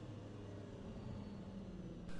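Car engine running faintly with a steady low hum.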